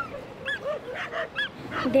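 Dogs barking and yelping in short, high, arching calls, a few each second, as they play together. A girl's voice starts right at the end.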